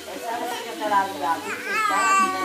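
Four-month-old baby vocalizing: cooing and babbling in short voiced sounds, with a rising, squealing note near the end.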